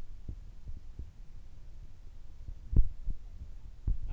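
Low, steady rumble with a few irregular thumps, the loudest a little before three seconds in: handling noise from a handheld camera as it is carried and swung around.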